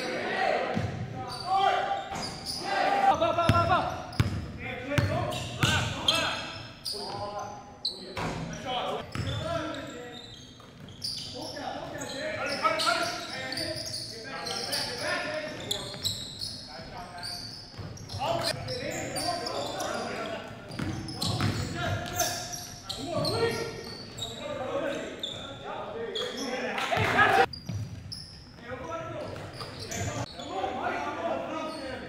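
Basketball being dribbled and bounced on a gym's hardwood floor, with repeated short thuds, among players' indistinct voices calling out, echoing in the gymnasium.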